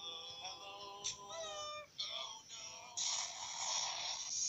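High-pitched, pitch-shifted cartoon character voices from an animated show, played through a device's speaker and re-recorded by a phone. About three seconds in, a louder harsh hissing sound takes over.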